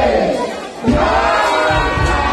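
A close, excited crowd of voices shouting and crying out together, with one loud voice sliding down in pitch near the start, over dull low thuds.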